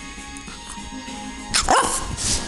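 A Petit Brabançon dog gives one short bark near the end, falling in pitch, over steady background music.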